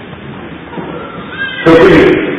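A man speaking, a sermon in Vietnamese: a short pause with only low background noise, then his voice comes back in loudly about three-quarters of the way through.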